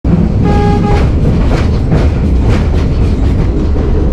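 CFR Malaxa diesel railcar under way, heard from inside the carriage: a steady loud low rumble with clicks from the wheels on the track. A short single-pitched horn toot sounds about half a second in.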